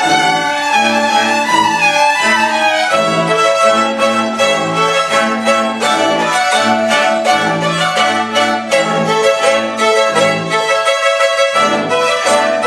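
Home-school string orchestra of violins, violas and cellos playing a brisk piece in short, detached repeated notes with a steady beat.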